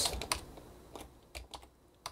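Computer keyboard keys pressed a handful of times, separate clicks spread over a couple of seconds.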